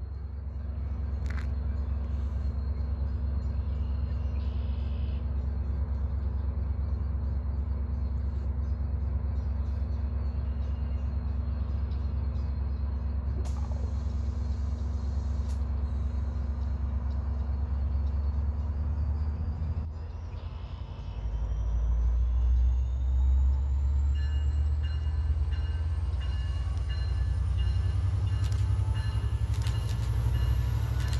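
Metra diesel-electric locomotive approaching a station platform, its engine rumbling steadily and growing louder about two-thirds of the way through as it draws near. From then on, high-pitched brake squeal comes in as the train slows to stop.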